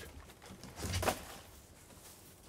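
A plastic carrier bag rustling as food is unpacked from it, with one short soft knock about a second in.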